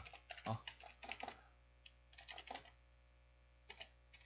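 Faint computer keyboard typing: a few quick runs of keystrokes with pauses between them.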